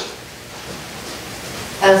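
Mostly steady, faint hiss of room tone in a pause between words. A man's voice starts speaking near the end.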